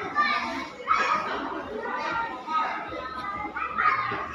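Young children's voices chattering and calling out together.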